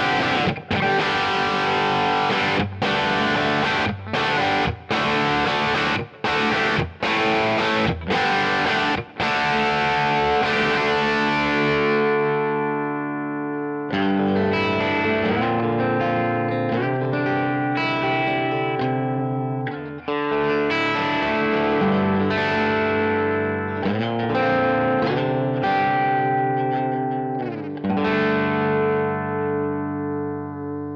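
Electric guitar played through a Kemper Profiler on a Tweed '56 Pro amp profile, with a crunchy, lightly overdriven tone. For about the first ten seconds it plays rhythmic chord stabs with short stops between them, then it moves to single-note lead lines and chords.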